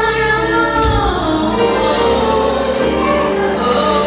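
Boy soloist singing a Christmas song into a microphone, holding long notes that glide in pitch, over instrumental accompaniment with choir voices behind.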